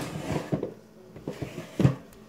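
Knocks and rustling of things being handled while someone rummages for scissors, ending in a sharper, louder knock near the end.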